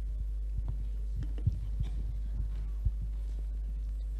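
Steady low hum through a handheld microphone and sound system, with several soft low thumps of the microphone being handled between about one and three seconds in.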